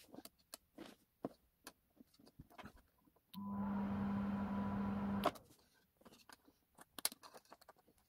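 Sheet of paper handled on a table with light rustles and clicks. About three seconds in, a steady electrical buzz with a low hum starts suddenly and cuts off with a click about two seconds later.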